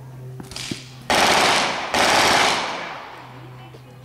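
Two loud rifle shots a little under a second apart, each trailing off in a long echoing decay.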